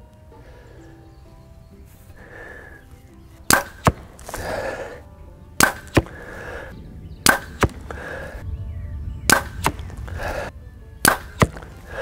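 A compound bow shot with a handheld thumb-button release, five shots about two seconds apart. Each shot is a sharp crack from the bow, followed about a third of a second later by a second knock as the arrow strikes the foam 3D target. Faint music plays underneath.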